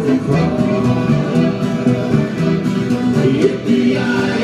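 Live country band playing an instrumental passage between sung verses, with accordion, fiddle and upright bass over a steady beat.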